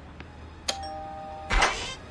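A doorbell rings: a steady electronic tone starts about two-thirds of a second in and lasts under a second, followed near the end by a louder, harsher sound.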